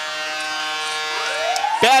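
Arena goal horn blaring a steady chord, with a siren rising in pitch from a little past a second in.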